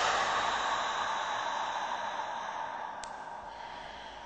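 A hiss of noise, with a faint steady tone in it, slowly fading away, and one faint tick about three seconds in.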